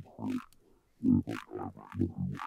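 Recorded dialogue turned into a growling neurofunk bass by pitch-shifting and distortion, played back with a morphing filter swept by an LFO, in choppy syllable-like bursts with a short gap near the middle. Much of the low end drops out as the filter sweeps toward its high-pass shape.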